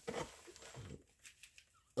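Dry worm-bin bedding poured from a quart can onto the bottom of an empty 28-quart plastic storage bin, a soft rustle that dies away about halfway through.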